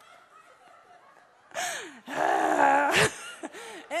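A woman laughing, starting about a second and a half in after a short quiet pause, with breathy drawn-out laughs.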